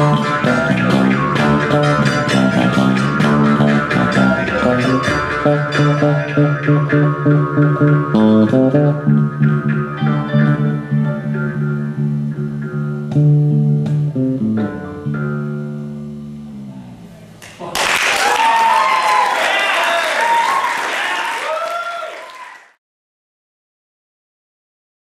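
Jaw harp holding a steady twanging drone with santur and bass, the improvised piece thinning out and fading away about two-thirds of the way through. Then the audience bursts into applause and cheering, which cuts off suddenly near the end.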